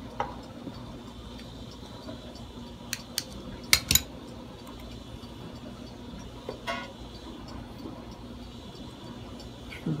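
Light metallic clicks and clinks of guitar strings against the steel bridge of a Squier Affinity Stratocaster as stuck old strings are worked out of their holes. A few sharp clicks come about three to four seconds in, the loudest just before four seconds, and a couple of softer ones come near seven seconds.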